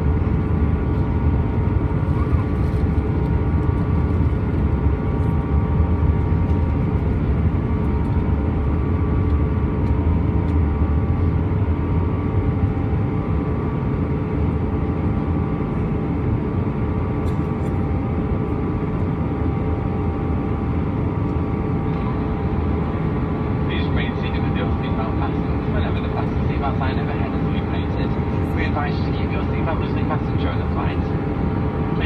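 Airbus A320-214 cabin noise in flight: the steady rumble of its CFM56 engines and airflow heard from a seat over the wing, with a few steady engine tones above it, easing slightly about halfway. A cabin-crew PA announcement starts faintly near the end.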